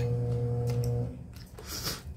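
A steady low electrical hum that cuts off suddenly about halfway through, then a short soft eating noise near the end as a strip of kimchi is taken into the mouth.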